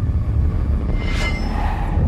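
A low, steady rumbling drone of a suspense film score, with a brief hissing swell about a second in.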